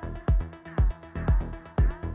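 An electronic afro house beat playing back: a four-on-the-floor kick drum at 120 BPM, two kicks a second, with lighter percussion hits between the kicks and sustained pitched tones over them.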